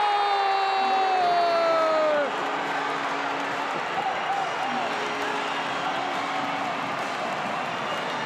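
Arena crowd cheering an overtime game-winning goal. Over the cheering, the goal horn holds one steady note, then sags in pitch and cuts off about two seconds in.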